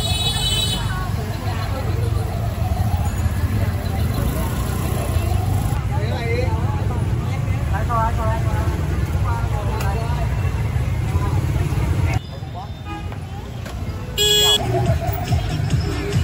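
Busy street ambience: a steady low rumble of motorbike traffic under crowd chatter, with a short, high horn beep at the start and another about fourteen seconds in.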